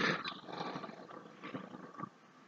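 Faint background hiss from a voice-recording microphone, with a few soft breathy swells.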